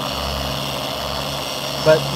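Meguiar's dual-action polisher running with a sanding disc on bare automotive paint, a steady hum as it sands consistently through the unprotected paint.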